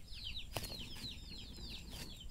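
Chicks peeping: a quick, steady run of short falling peeps, several a second. One sharp click sounds about half a second in.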